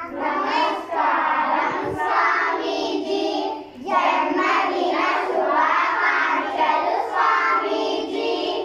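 A group of children's voices chanting together in unison, in two long phrases with a short break about four seconds in.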